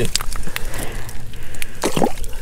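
Water and slush crackling and sloshing in an ice-fishing hole as a fish is lifted out by hand, with a sharp knock near the end over a steady low rumble.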